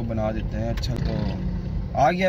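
A man's voice talking over the steady low rumble of a car, heard inside the cabin.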